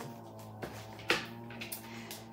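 Plastic-wrapped wax melt packs handled and set down, with two sharp crinkly clicks about half a second apart near the middle, over a steady low hum.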